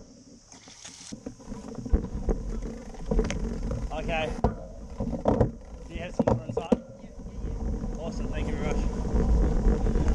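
Wind rumbling on the microphone, with faint voices talking at a distance and a steady high hiss.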